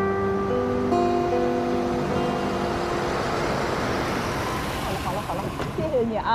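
Soft background music with held notes that fade out over the first couple of seconds, then the rushing noise of a taxi driving up, growing louder; a voice starts speaking near the end.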